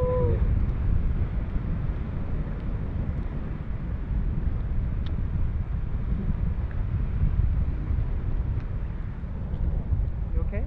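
Wind rushing over a camera microphone during a tandem paraglider flight: a steady, deep buffeting rumble.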